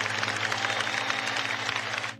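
Crowd applauding and cheering over a held, distorted electric guitar note that keeps ringing.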